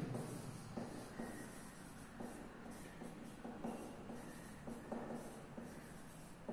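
Marker pen writing on a whiteboard: a run of short, irregular faint strokes as a word is written by hand.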